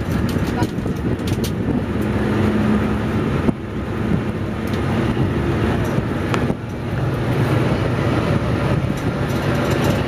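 Open-sided tour shuttle tram driving along: steady engine rumble with road and wind noise, and two short knocks about three and a half and six and a half seconds in.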